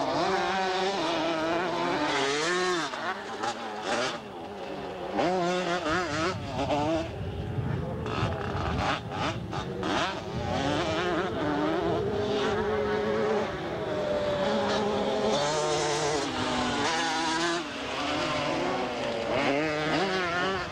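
125cc two-stroke motocross bikes racing, their engines revving up and down in pitch as the riders work the throttle over the track.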